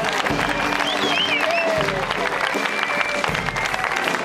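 Audience applauding, many quick claps, over live dance music that plays on beneath it.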